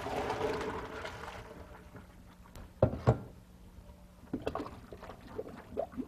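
Cooked linguine and its hot water poured from a pot into a colander in the sink: a rush of water that fades out over about two seconds. Then two sharp knocks and a few lighter clatters of the pot and colander.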